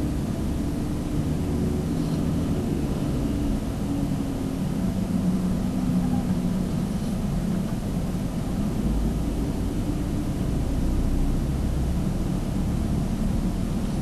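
Steady low rumble with a hiss over it, a constant background noise with no distinct events.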